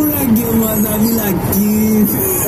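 A radio playing inside a moving vehicle's cab: a voice holding drawn-out, gliding notes, over steady engine and road noise.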